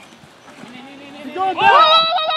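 A person's long, loud yell, wordless, that rises in pitch and then holds, starting about a second and a half in after a quiet stretch.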